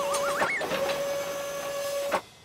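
Cartoon sound effect of a crane hoisting a load: a steady mechanical hum. A wobbling whistle rises in pitch over it and breaks off about half a second in, with a brief dip in the hum.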